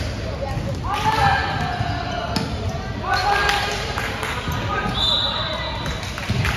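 Basketball bouncing on a gym floor amid shouts from players and spectators, echoing in a large indoor sports hall.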